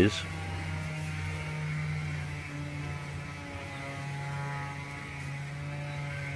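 A steady machine hum with a set of fainter, higher tones above it, running evenly.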